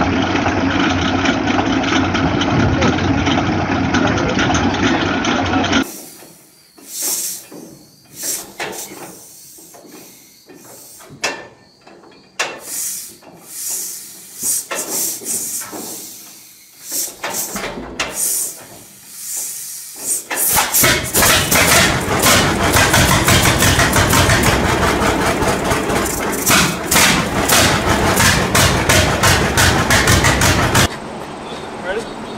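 An early two-cylinder John Deere tractor on spoked steel wheels is being hand-started: scattered clicks and knocks, then about twenty seconds in the engine catches and runs loudly with a quick, even beat. Before that, for the first six seconds, there is loud, steady engine noise beside a vintage Deutz tractor.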